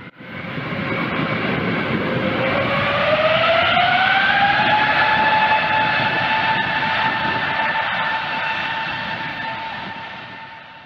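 Jet airliner engines spooling up: a steady rush with a whine that rises in pitch over a few seconds, then holds steady, fading out near the end.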